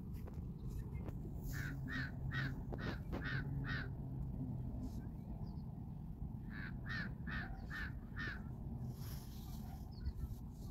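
A bird calling in two runs of short repeated calls, about two or three a second: six calls starting about a second and a half in, then five more around the seventh second.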